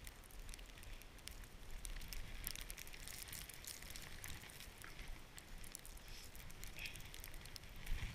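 Skis sliding and hissing through snow on a downhill run, heard from a head-mounted camera: a steady rushing noise sprinkled with many small crackles and ticks.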